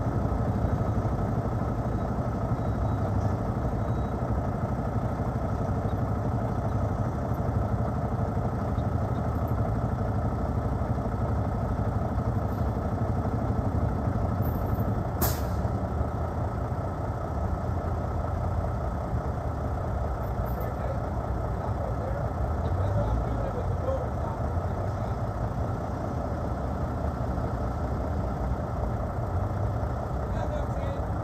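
International LoneStar semi-truck's diesel engine idling with a steady low rumble, and one sharp click about halfway through.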